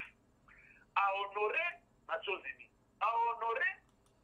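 Speech only: a voice speaking in three short phrases with pauses between them, with the thin, narrow sound of a telephone line.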